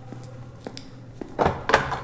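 A few light clicks, then two loud knocks about a second and a half in, the second the louder: the prison cell door being worked open.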